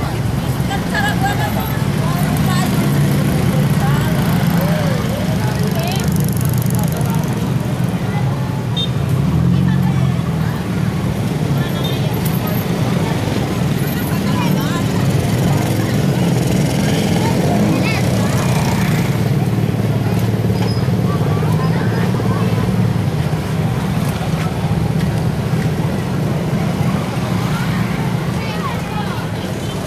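Street traffic of motor scooters and motorcycles passing close by, a steady engine noise, mixed with the chatter of a crowd of people.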